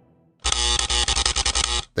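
A loud electronic buzz, about a second and a half long, that starts half a second in and cuts off abruptly.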